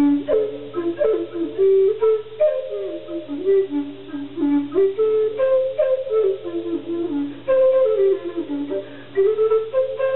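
Solo wooden Native American-style flute playing a slow melody of short stepping notes and a few held ones in a low register.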